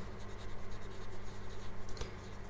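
Felt-tip pen writing on paper: a run of quick, light scratching strokes.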